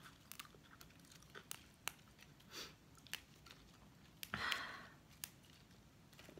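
Fresh basil leaves and stems torn by hand and dropped into a bowl of pho: faint, crisp little snaps and clicks, with a louder rustle about four and a half seconds in.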